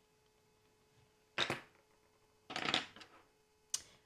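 A few short knocks and clatters as a pen and a coloured pencil are set down on a desk and handled: one about a second and a half in, a small cluster a second later, and a brief click near the end.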